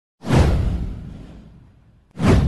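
A single whoosh sound effect with a deep low rumble, coming in suddenly a fraction of a second in and fading out over about a second and a half.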